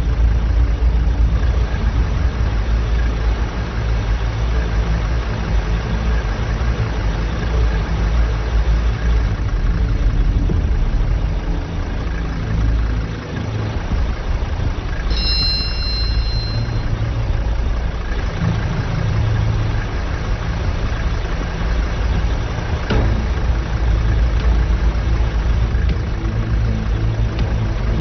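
Farm tractor engine idling steadily with a deep, low rumble. A brief high-pitched tone sounds about halfway through.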